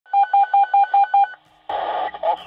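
Six quick electronic beeps from a dispatch radio alert tone, evenly spaced at about five a second. About 1.7 s in, a burst of radio static hiss starts as the channel opens.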